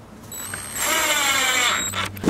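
Electric drill driving a screw through a metal drawer slide into plywood. The motor spins up about half a second in and runs for about a second with its pitch sagging slightly under load, then stops just before the end.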